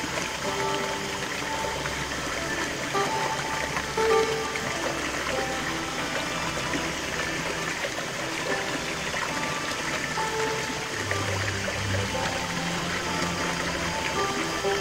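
Small stream splashing steadily over rocks into a shallow pool, with background music of held pitched notes playing over the water.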